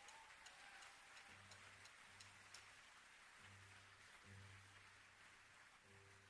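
Faint, scattered audience applause in a concert hall, following an introduction of the band, with a soft low tone sounding on and off several times from about a second in.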